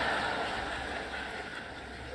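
Lecture-hall audience laughter dying away, a diffuse crowd sound that fades steadily.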